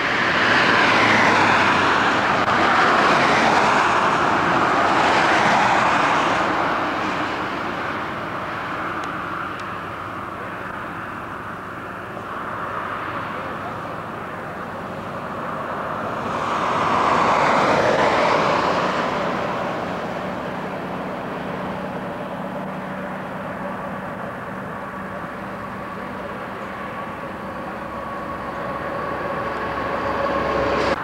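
Vehicles passing on the road: one goes by in the first few seconds and another about 17 seconds in, each a rush of tyre and engine noise that rises and fades. In the second half a steady engine hum with a few held tones.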